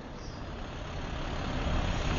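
Steady background rumble and hiss with no speech, slowly growing louder.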